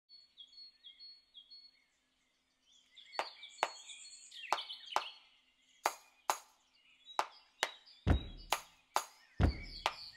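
Birds chirping in short repeated notes, then a steady clicking beat starting about three seconds in, with deep thumps joining near the end: the intro of a song.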